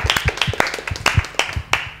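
A small group of people clapping their hands, a quick uneven patter of claps that thins out toward the end.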